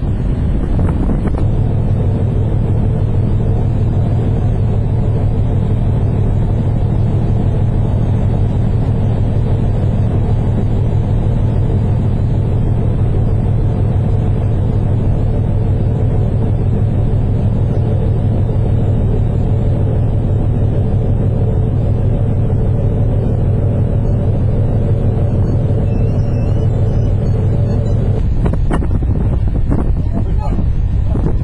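Tallink car ferry's engines and machinery running at cruising speed, a steady low drone with several held tones in it that shifts near the end.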